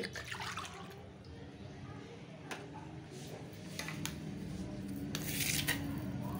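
Warm milk poured from a small cup into a glass mixing bowl, a splashing, running pour, followed by a few short louder noises near the end.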